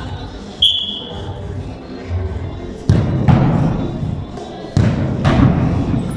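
Two sharp thuds of a soccer ball being struck, about two seconds apart, after a brief high whistle-like tone near the start. Music and voices run underneath.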